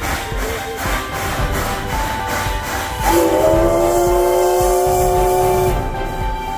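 Steam whistle of the C11 325 steam locomotive giving one long blast of about two and a half seconds, starting about halfway through, over background music with a steady beat.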